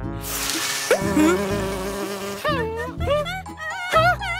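Cartoon sound effects over background music: a swish at the start and a quick rising glide about a second in, then a cartoon character's wordless, wavering vocal sounds in the second half.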